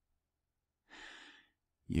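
A man's short breath, drawn about a second in, faint and airy, in a pause between spoken phrases; his speech resumes at the very end.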